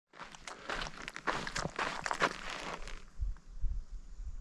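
Footsteps crunching on a gravel road at a walking pace, a quick run of crunches that stops sharply about three seconds in. A few low thumps follow near the end.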